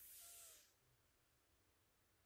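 A soft breath out through the nose, a faint hiss that stops about two-thirds of a second in, followed by near silence.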